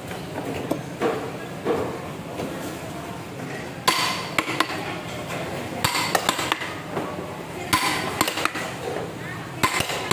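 A heavy knife chopping scoring cuts into a large whole fish on a wooden block: sharp knocks of the blade going through the flesh and striking the block, in a few short runs from about four seconds in, over a steady murmur of voices.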